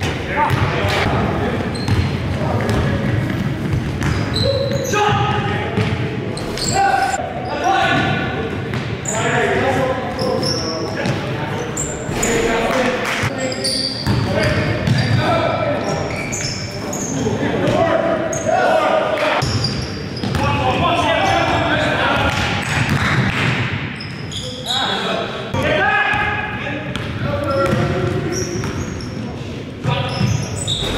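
Live sound of an indoor basketball game in a reverberant gym: the ball bouncing on the hardwood court amid players' indistinct calls and shouts.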